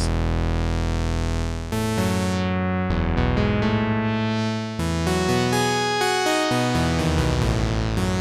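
Arturia Pigments 4 software synth playing a retro synthwave patch: a sawtooth with a square an octave below, pulse-width modulated, through a resonant Matrix 12-style filter. It holds a series of sustained notes and chords that change about every one to two seconds, while the filter cutoff is swept by a macro knob.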